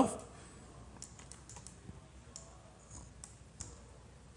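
Faint, scattered clicks of a computer mouse and keyboard, about ten irregular clicks across the few seconds.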